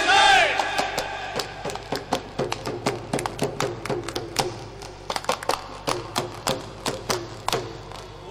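Stage music of irregular, sharp percussion strikes, a few a second, over a faint held tone, easing off in loudness toward the end.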